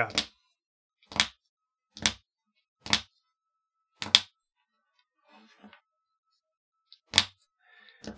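Plastic cable drag chain links snapped shut by hand, one at a time: sharp snaps about a second apart, a faint rustle of handling, then one last snap near the end.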